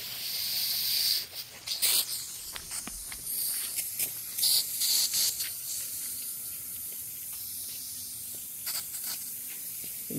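Pop-up lawn sprinkler rotor heads spraying water: a steady hiss from the jets, with a few brief louder bursts.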